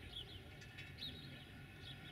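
Small birds chirping, a few short calls spaced through the moment, over a faint low rumble.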